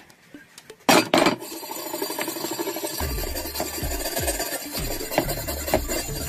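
A hand tool scraped rapidly back and forth over a rusty steel axe head, scrubbing off rust, after a loud metal clatter about a second in.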